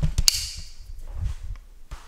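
Handling noise from a handheld camera being swung around: a few sharp clicks and a brief hiss just after the start, then dull low thuds.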